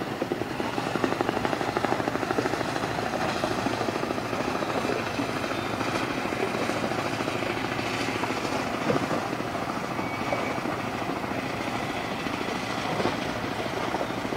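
A ship's engine running steadily with a fast, even throb, over the wash of water along the hull.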